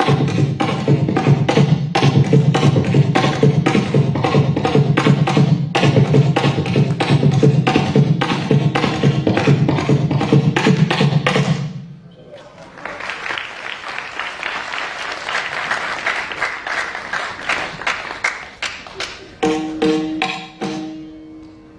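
Concert recording of Carnatic percussion: fast, dense drum strokes with a deep resonant tone that stop abruptly just before halfway. Applause follows, and near the end a melodic instrument begins to play.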